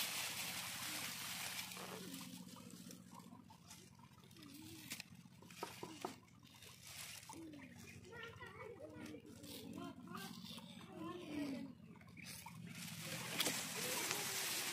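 Faint, distant voices over a light hiss, with a few sharp handling clicks about five to six seconds in.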